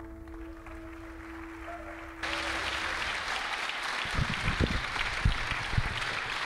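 The backing track's last held chord fades away, then about two seconds in an audience suddenly breaks into steady applause, with a few low thumps in it.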